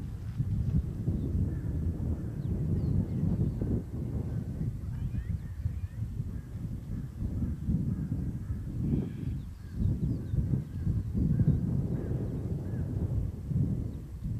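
Wind buffeting the microphone in uneven gusts, a low rumble throughout, with faint short chirps of small birds in the background.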